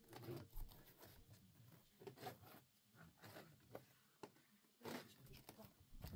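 Faint rustling and scraping of a thin polyethylene foam packing sheet being pulled up and lifted out of a foam-lined wooden shipping crate, in a run of short, irregular rustles.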